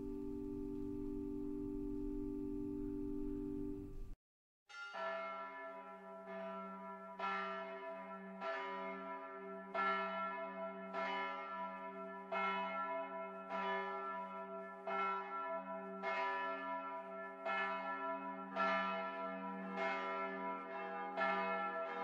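A held, sustained musical chord ends about four seconds in, and after a brief silence church bells ring: a long run of strokes on several pitches, about one and a half a second, coming closer together near the end.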